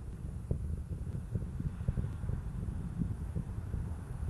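Low, steady rumble with scattered faint crackles: the distant roar of the Space Shuttle's solid rocket boosters and main engines in flight.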